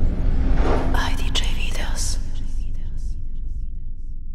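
Logo intro sting: a deep low rumble that fades slowly, with a whispered voice over it from about half a second to two and a half seconds in.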